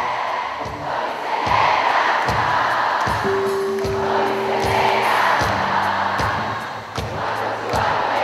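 A live band playing with a steady drum beat while a large audience sings along, with a long held note in the middle.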